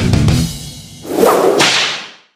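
A single sharp, whip-crack-like whoosh sound effect starting about a second in and fading out quickly, after the heavy-metal backing music has died away.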